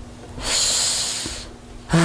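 A man's audible breath in, close to a microphone: a hiss about a second long starting about half a second in, taken during a pause in his speech.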